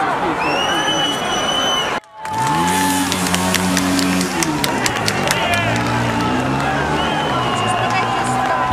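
Large crowd cheering, with high whistles, scattered clapping and long low held tones over the din. The sound drops out abruptly for a moment about two seconds in.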